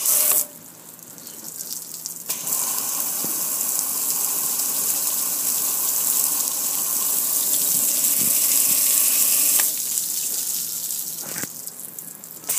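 Water spray from a hose hitting a gas grill and splashing down onto concrete: a short burst at the start, then a steady spray from about two seconds in until nearly ten seconds, easing off and stopping near the end.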